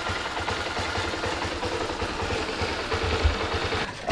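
A small engine running steadily, with a rapid low chugging and a steady hum.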